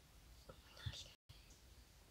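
Near silence: faint room tone, with a brief soft whisper about a second in and a momentary dropout of the audio just after it.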